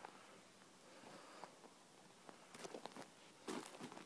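Near silence with a few faint footsteps on snow-dusted ground, in two short clusters in the second half.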